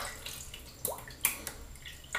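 Water being added to a lathered shaving brush: a few faint drips and small splashes, starting about a second in.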